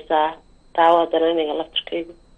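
Speech only: a caller's voice coming over a telephone line, thin and narrow, in two short stretches with a brief pause about half a second in.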